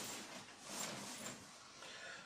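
Faint rustling of clothing and the table sheet as a person lying face down on a massage table shifts and stretches his arms forward.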